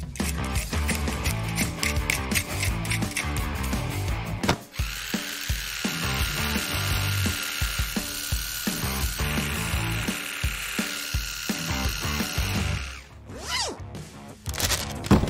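A Dremel rotary tool with a round brush wheel, whining steadily at high speed as it scrubs leftover paint off a bare die-cast metal toy car body. It starts about five seconds in and stops a second before the end, over background music.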